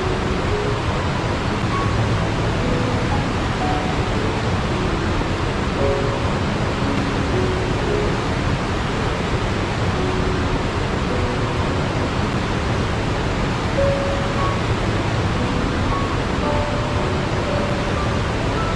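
A steady, even rushing noise, like a relaxation ambience track of water or wind, with soft, faint musical notes scattered underneath.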